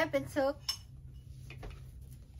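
Light clinks of tableware at a meal, a couple of sharp ticks about two-thirds of a second and a second and a half in, after a brief bit of a woman's speech.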